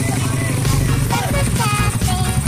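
Drag-racing motorcycle engines running steadily in a crowded staging lane, under music with a singing voice.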